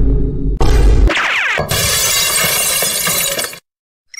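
A computer screen smashing: a loud crash with a deep rumble, then a glass-shattering sound effect with a long spill of breaking glass that cuts off suddenly about three and a half seconds in.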